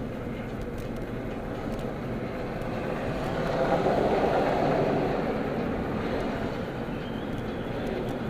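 Car interior noise while driving: steady engine and road noise heard inside the cabin. It swells louder for a couple of seconds in the middle, then settles back.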